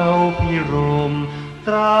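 Male singer singing a Thai luk krung ballad with an orchestral accompaniment. He holds and bends long notes and takes a short break about one and a half seconds in before starting a new phrase.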